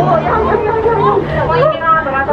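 People talking and chattering over a steady low hum.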